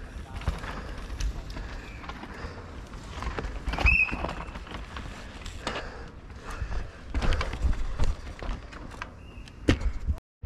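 Downhill mountain bike rolling over a rocky dirt track, with repeated knocks and rattles as the wheels drop over rocks and roots, and a short high squeal about four seconds in, the loudest moment.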